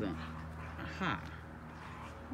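Dogs play-wrestling, with a short dog vocal sound about a second in, over a steady low hum; a woman says "aha" at the same moment.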